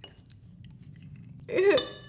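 Faint crunching as a toothpaste tablet is chewed, then near the end a woman's short laugh and a bright ringing clink.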